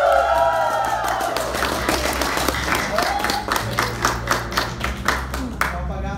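Audience cheering and clapping: whoops and shouts near the start, then a run of sharp claps that thins out near the end.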